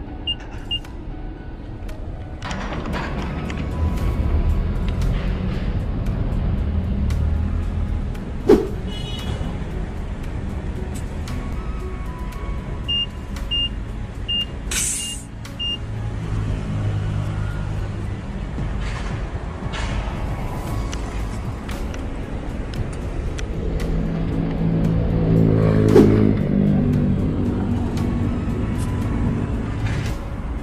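Short, high electronic beeps from a petrol-station tyre inflator as its pressure is set: a few in the first second, then a run of five about halfway through. Under them runs a steady low rumble, with scattered handling clicks.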